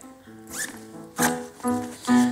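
Piano playing held notes, over a few short zip sounds as the zipper of a nylon medical bag is pulled open.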